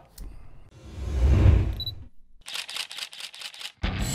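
A swelling rush of noise with a low rumble, a short high beep, then a camera shutter firing in a rapid burst of about a dozen clicks. This is the sound effect of a photography title animation.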